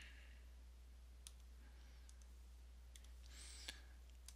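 Near silence: room tone with a steady low hum and two faint clicks, about a second in and near the end, from working the drawing program's menu to copy and move a shape.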